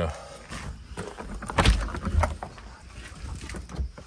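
Footsteps crunching on gravel, with a louder clunk about one and a half seconds in and another soon after as an RV basement storage compartment door is unlatched and swung open.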